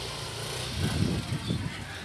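Motor scooter engine running at low speed, with uneven low surges about a second in as the riders move off.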